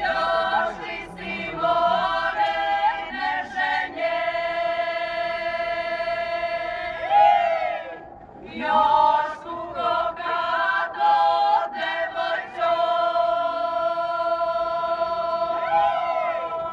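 Choir singing, holding long sustained chords, with a short break about eight seconds in.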